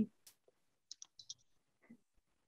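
Quiet room tone with a few faint, short clicks clustered about a second in.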